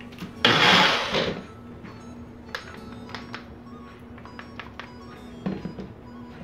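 Personal bullet-style blender runs in one short pulse of about a second, churning a thick marinade, followed by light clicks and knocks of the plastic cup being handled on its base.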